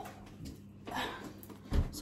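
Quiet handling noise as a handbag is brought up to the camera: a soft rustle about a second in and a dull bump near the end.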